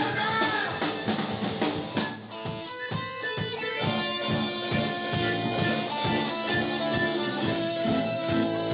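Live rock band playing a punk rock song: a voice singing over guitar and drums for the first two seconds, a brief drop around three seconds in, then guitar notes over a regular drum beat.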